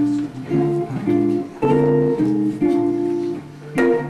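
Archtop jazz guitar played solo: a chain of plucked chords, a new one about every half second, with a sharper strummed chord near the end.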